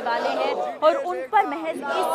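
A protest crowd's voices, several people calling out slogans together.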